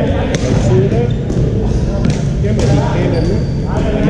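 Badminton rackets striking a shuttlecock, several sharp clicks a second or two apart, in a large sports hall full of steady background noise and voices.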